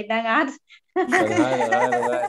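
Speech only: people talking, with a short pause just after half a second in.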